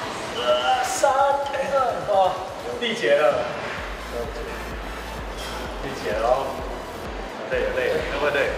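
Men's voices talking over background music, with a steady low beat that comes in about four seconds in; a single knock sounds about a second in.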